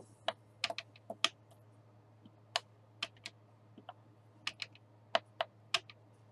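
Clear acrylic stamp block tapping against an ink pad and down onto card stock: about fifteen sharp, irregular clicks.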